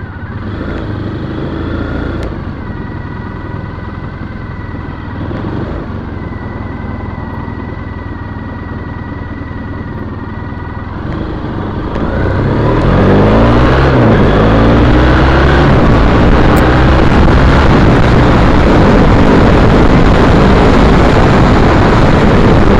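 2010 Triumph Bonneville T100's parallel-twin engine running at low speed, then accelerating about twelve seconds in, its pitch rising through the gear changes. Loud wind rush on the microphone takes over as the bike gathers speed.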